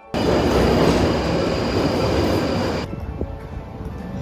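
London Underground train running through a station: a loud, dense rush with a steady high squeal. It starts suddenly and cuts off abruptly after about three seconds. Quieter station rumble with soft music follows.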